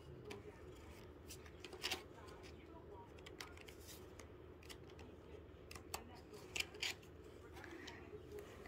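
Faint, scattered crinkles and ticks of a foil booster pack and trading cards being handled, with a few sharper snaps around the middle and near the end.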